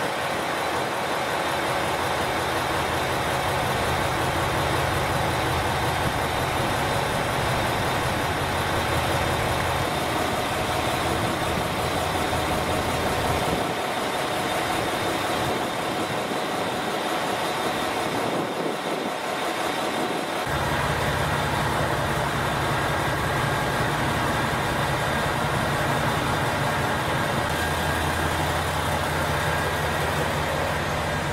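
A KiHa 281 series diesel train idling: a steady engine hum with a constant higher whine. The low rumble fades away about halfway through, then comes back strongly about two-thirds of the way in.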